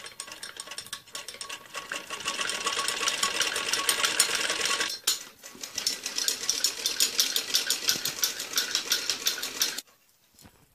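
Domestic sewing machine stitching lace onto a net frill with a fast, even clatter. It breaks off briefly about halfway, starts again, and stops suddenly just before the end.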